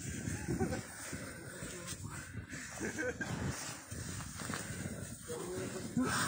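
Several people trudging through deep snow: an irregular crunching and swishing of steps sinking into the snow.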